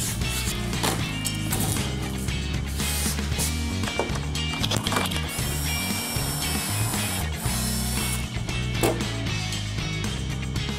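Background music with a stepping bass line runs throughout. From about five to eight seconds in, a cordless drill runs at a steady pitch, its bit boring a pocket hole into plywood through a Kreg pocket-hole jig.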